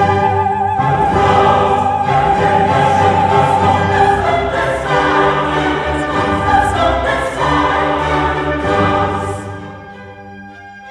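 Choir singing in German with full orchestra in a Classical-era oratorio chorus. About nine seconds in, the singing drops away and the music falls back to a quieter orchestral passage.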